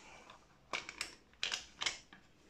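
Plastic case halves of a grenade-style CB hand microphone being pulled apart by hand: about four short, sharp clicks in the second half, a little under half a second apart.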